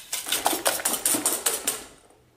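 Wire balloon whisk beating eggs and sugar in a stainless steel bowl, its wires clicking rapidly against the metal sides; the clicking tails off just before the end.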